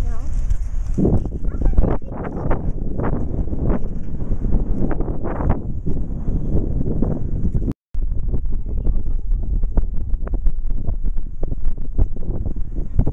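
Strong wind buffeting the camera microphone in a continuous low rumble with irregular gusty thumps. The sound cuts out completely for a moment about eight seconds in.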